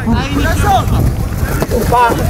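Wind buffeting the microphone in a low, uneven rumble, with men's voices calling out over it.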